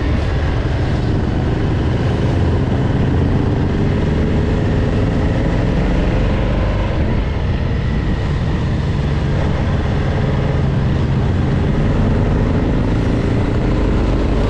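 Motorcycle engine running steadily while riding at road speed, with wind rushing over the bike-mounted camera's microphone.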